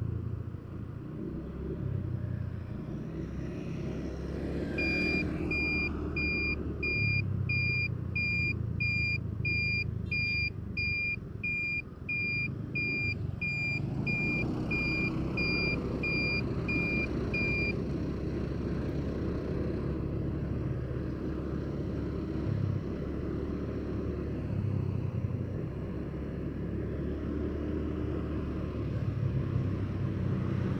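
Road traffic and a vehicle running while driving, heard as a steady low rumble. An electronic warning beeper sounds about twice a second from about five seconds in and stops about eighteen seconds in.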